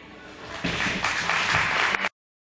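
Audience applauding, starting about half a second in as the last of a rock band's guitar and drum sound dies away.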